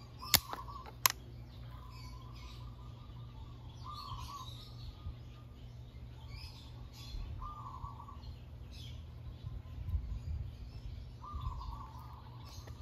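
Two sharp clicks in the first second as the buttons of a GoPro HERO9's SuperSuit dive housing are pressed, then birds calling every second or two over a low steady hum.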